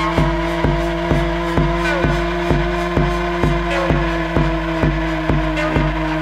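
Hardware techno loop: a steady four-on-the-floor kick from the Elektron Analog Rytm drum machine, about two beats a second, under a sustained synth drone from the Kilpatrick Phenol semi-modular synth, with a few short gliding synth sweeps.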